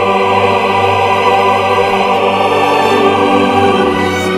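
Male choir of classical singers singing slow, long-held chords.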